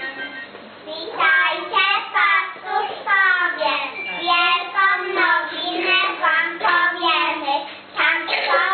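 Children singing a Christmas carol, the singing starting about a second in, with a brief breath gap near the end.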